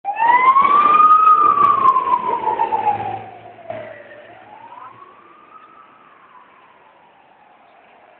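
Emergency vehicle siren wailing, sliding slowly up and down in pitch. It is loud at first and fades away after about three seconds, as if driving off.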